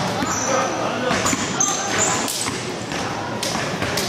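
Basketball gym ambience: balls bouncing on the court in repeated sharp thuds, short high sneaker squeaks, and indistinct voices in the hall.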